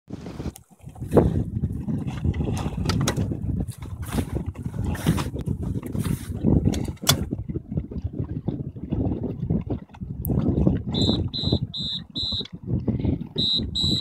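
Wind buffeting the microphone over choppy water, with uneven gusty rumbling. In the last three seconds a run of short, high electronic beeps sounds, four in quick succession and then two more.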